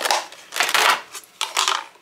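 Plastic fruit-and-vegetable storage tub being handled as its lid comes off and the colander basket inside shifts: three bursts of plastic rustling and scraping, the middle one the longest and loudest.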